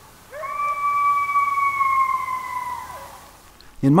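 A coyote's howl: one long, steady note held for about three seconds after a short rising start, sliding down as it fades out.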